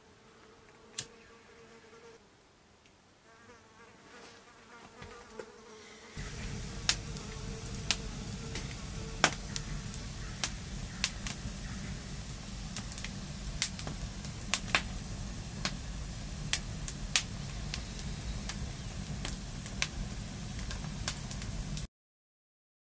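A faint insect buzz at first; about six seconds in, a wood campfire burning strongly, with a steady rush of flames and frequent sharp crackles and pops. The sound cuts off suddenly near the end.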